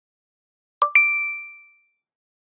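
Two-note chime for a logo intro: a short ding followed a moment later by a higher, brighter ding that rings on and fades away within about a second.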